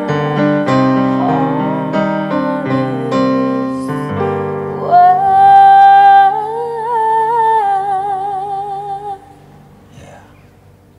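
A Yamaha CP stage piano plays a run of chords. From about five seconds in, a woman's voice holds one long closing note with vibrato over a sustained chord. Voice and piano stop together about nine seconds in, ending the song.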